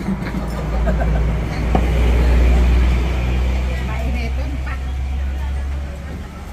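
Low engine rumble of a motor vehicle close by, swelling to its loudest around the middle and easing off toward the end, with faint voices and light clinks of spoons in bowls over it.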